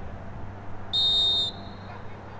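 Referee's whistle: one short, shrill blast about a second in, fading into a faint tail.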